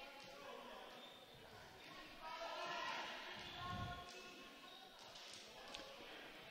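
Faint, echoing voices of players in a large gymnasium, with a soft thud about four seconds in.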